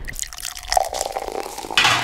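Cooking oil glugging and dripping out of a plastic bottle onto a foil-lined baking tray. A short, louder hiss comes near the end.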